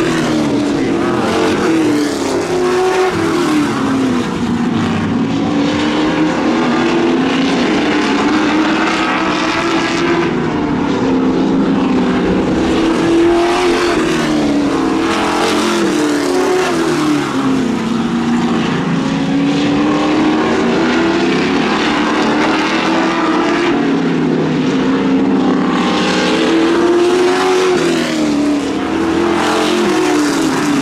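Sportsman stock cars racing on a short oval, their engines loud throughout and rising and falling in pitch over and over every several seconds as the cars accelerate down the straights and lift for the turns.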